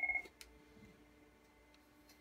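Cisco IP phone ringing for an incoming call, a fast-pulsing two-tone ring that cuts off about a fifth of a second in. A single faint click follows, then only a low hum.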